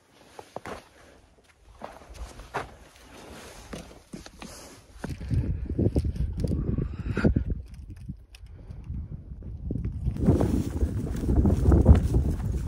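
A hiker's footsteps on rocky, snow-dusted volcanic ground, as separate scuffs and knocks. From about five seconds in, low gusting wind buffets the microphone, easing briefly and rising again near the end.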